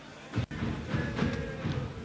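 Quiet background, then an abrupt edit cut about half a second in to louder football-match ambience from the pitch: distant, indistinct voices.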